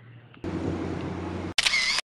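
Camera sound effect: a steady whir for about a second, then a sharp click and a brighter, harsher burst that cuts off abruptly.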